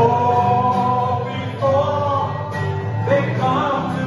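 Live band music: a man singing held notes over strummed acoustic guitars and electric bass guitar.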